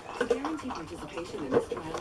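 A puppy eating fast from a slow-down feeder bowl, its food and teeth knocking against the bowl in scattered clicks.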